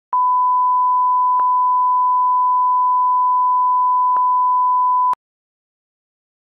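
Steady single-pitch line-up reference tone played with colour bars at the head of a tape, marking the audio level. It carries faint clicks twice during it and cuts off suddenly about five seconds in.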